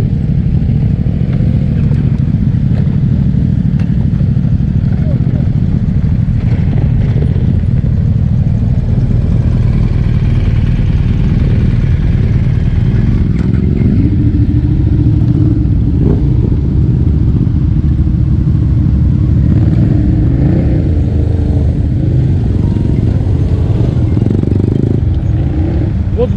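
Motorcycle engines idling and running at low speed close by, a heavy low rumble throughout. A steady engine hum joins about halfway through and fades near the end.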